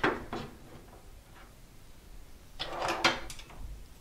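Power-supply cables and their plastic connectors being handled and tucked away inside a metal computer case, knocking and rustling against it: a couple of knocks at the start, then a short burst of clatter with one sharp knock about three seconds in.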